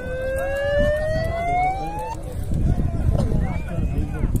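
A large outdoor crowd of kupkari spectators murmuring and calling out. Over the first two seconds a long, clear tone rises steadily in pitch and then cuts off suddenly.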